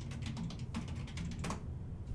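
Computer keyboard typing: a quick run of key clicks that stops about a second and a half in.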